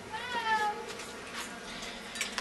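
A single meow-like call about half a second long, its pitch wavering and then dropping at the end.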